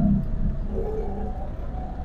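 Low, steady engine and road rumble from a small vehicle being ridden slowly, with faint wavering tones partway through.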